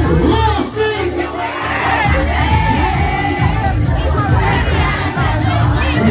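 Loud party music with a heavy bass beat and a crowd of partygoers singing and shouting along; the bass cuts out briefly about a second in.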